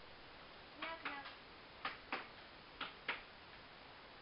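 Three pairs of short, sharp knocks, the pairs about a second apart.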